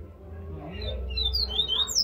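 Caged male yellow-bellied seedeater (baiano) singing: a quick run of short, high, sweeping chirps that starts just under a second in and grows louder.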